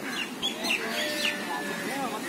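Birds calling from the trees: several short chirps, then a longer held note about a second in, over steady outdoor background noise.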